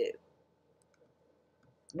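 A short pause between a woman's spoken sentences: near-quiet room tone broken by a few faint, brief clicks.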